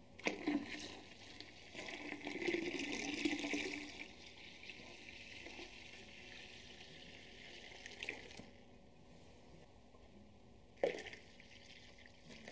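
Cold water poured from a stainless steel pot into a plastic fermenter of foamy beer wort, splashing into the liquid, loudest in the first few seconds and then a quieter stream, with a couple of light knocks later on. The water is topping up the wort to bring it down from 26 degrees.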